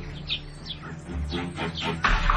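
Garden birds chirping in short, quick downward-sliding calls over a quiet, sustained low soundtrack music bed.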